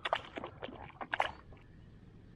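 A few short splashes and knocks of a landing net being worked in the water to release a pike, the loudest splash a little over a second in.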